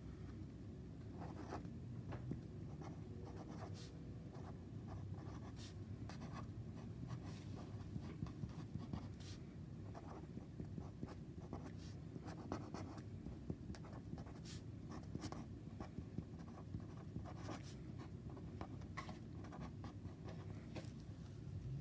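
Felt-tip marker writing on paper: many short, faint pen strokes in quick succession, over a low steady room hum.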